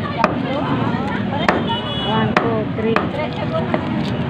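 A cleaver chopping on a wooden block: about five sharp, irregular knocks, loudest around the middle, over a background of people talking.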